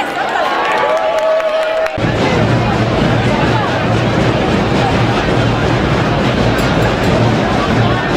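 Crowd voices, then about two seconds in a troupe of snare drums and bombos (bass drums) starts up all at once: a dense, continuous drum roll with a steady low boom underneath.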